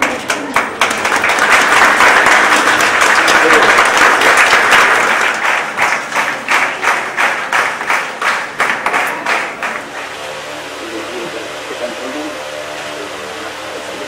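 A small group of people applauding: the clapping swells into a dense burst over the first few seconds, then breaks up into separate claps and dies away about ten seconds in, leaving murmured voices.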